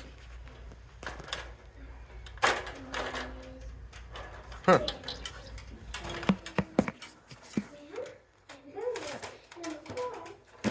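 Scattered clicks and knocks of handling, with a few brief muffled words; the sharpest click comes about halfway through.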